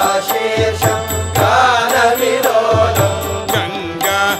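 Devotional Hindu bhajan to Lord Shiva: a sung melody over a steady held drone, with evenly repeating percussion strokes.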